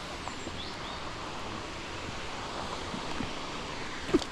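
Steady, even rush of flowing river water.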